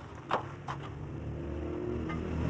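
A motor engine runs steadily and grows slowly louder. Two sharp taps come near the start, about a third of a second apart.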